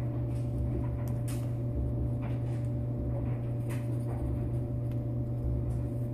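A steady low hum throughout, with a few faint, brief scrapes and ticks of a slip of paper being pushed against the breech of a Martini-Henry rifle at the gap between the breech block and the case head. The paper does not go in: the fit is tight.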